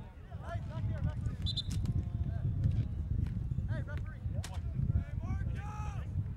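Scattered distant shouts and calls from players and spectators, the loudest near the end, over a steady low rumble of wind on the microphone, with a few faint knocks.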